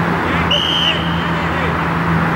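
A referee's whistle blown once, a short high blast about half a second in, over steady outdoor background noise and a low hum.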